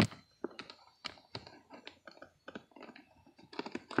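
Irregular light clicks and snaps of a hard plastic blister tray as RCA cables are worked loose from it, with a sharper click right at the start.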